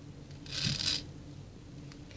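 A brief rustling, rubbing sound about half a second in, lasting about half a second.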